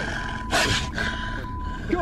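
Running footsteps and handheld-camera jostling through long grass, with a short loud rustling rush about half a second in. Under it sit a low rumble and a thin, steady, high beep-like tone that cuts in and out.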